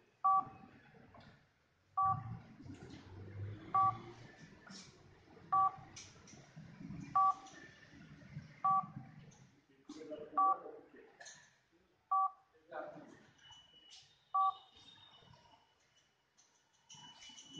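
Sony Xperia M4 smartphone beeping from its speaker during its proximity sensor test: nine short two-tone beeps, about one every two seconds, as a hand passes over the sensor.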